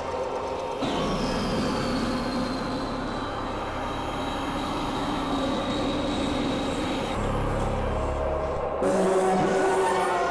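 Experimental synthesizer drone and noise music: a dense, rumbling noisy texture with steady tones and a slowly falling high whine, shifting abruptly about a second in, around seven seconds in and again near the end.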